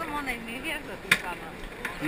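Faint voices in the background, and one sharp click or knock about a second in.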